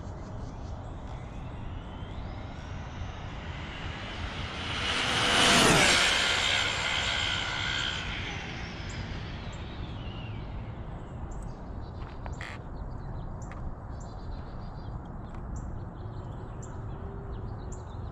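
Arrma Limitless V2 RC speed-run car with a Castle 1721 brushless motor on 6S making a full-speed pass, clocked at 143 mph. Its high-pitched whine swells as it approaches, is loudest as it passes about five to six seconds in, then drops in pitch and fades away.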